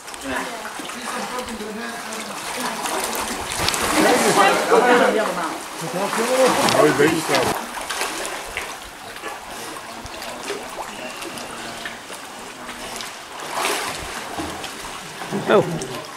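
Water splashing and sloshing as a snorkeler lowers himself off a ladder into the sea and puts his face in, with people talking nearby.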